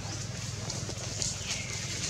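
Infant long-tailed macaque giving one short, high call about one and a half seconds in that falls in pitch and then holds, over faint rustling of dry leaves and a steady hiss.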